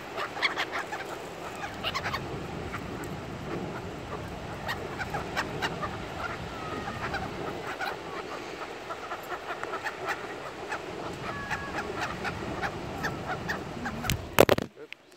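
A flock of feral pigeons feeding at close range: a steady low murmur of calls mixed with many short clicks of pecking and scuffling on gravel, with a few brief higher calls.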